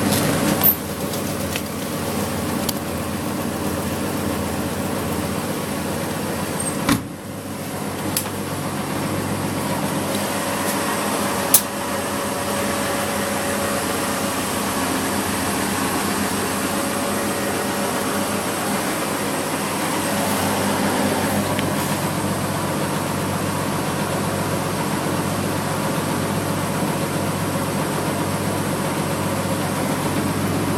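Front-loading washing machine running with a steady mechanical hum, with a few sharp clicks, the loudest about 7 and 11 seconds in.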